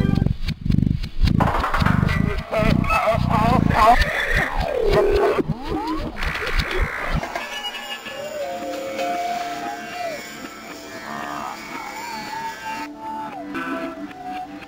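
Slowed-down TV logo jingles: music and sound effects played at half speed. It opens with heavy, repeated deep thumps and warbling, sliding tones, then turns quieter, with slow, drawn-out gliding tones from about eight seconds in.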